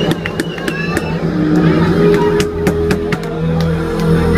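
Live rock band's instruments on stage holding sustained guitar and bass notes, with more notes joining from about a second and a half in, over voices in the crowd and scattered sharp clicks.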